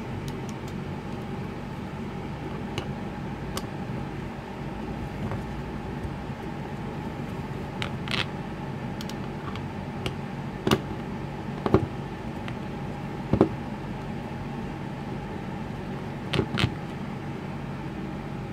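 Sharp clicks and knocks of a screwdriver and small screws on a workbench as screws are undone from a small plastic generator housing. They come as a few scattered taps and then a cluster of louder knocks in the second half. A steady machine hum runs underneath throughout.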